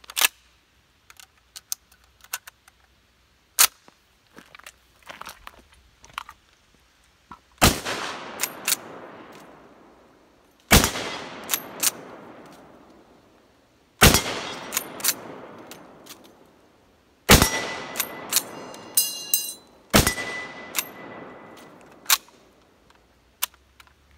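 Steyr Mannlicher M95/30 straight-pull carbine in 8x56mmR: handling and loading clicks, then five shots about three seconds apart, each followed by a long echo fading over two to three seconds. Smaller clacks between the shots are the straight-pull bolt being cycled, and a short metallic ringing comes after the fourth shot.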